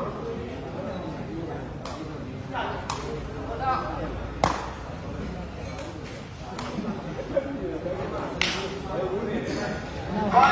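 Sepak takraw ball being kicked back and forth in a rally: several sharp smacks, one every second or two, over the murmur of spectators' voices.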